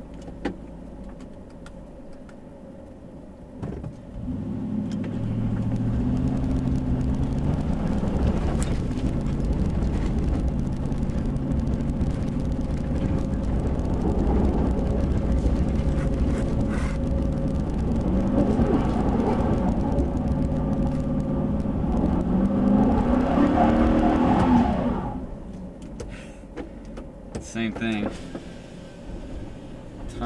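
A 2005 Nissan Titan's 5.6-litre V8, heard from inside the cab, idles low, then revs up about four seconds in and holds high revs that rise and fall as the two-wheel-drive truck climbs a loose dirt hill. Its open differential lets one rear wheel spin while the other grips. The revs drop off suddenly near the end.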